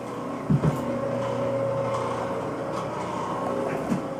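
Steady mechanical hum carrying a few held tones, like a fan or motor running, with a couple of short low thumps about half a second in.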